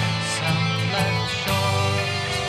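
Instrumental rock music: guitar over bass and drums, with a drum hit about every half second.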